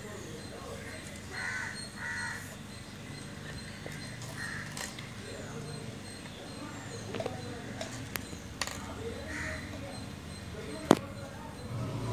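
Low background sound with a few faint, harsh short calls and voice fragments scattered through it, and one sharp click shortly before the end.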